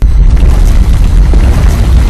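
Loud, heavily distorted boom sound effect edited into the clip: a dense, bass-heavy blast of noise that starts suddenly and cuts off suddenly after about two seconds.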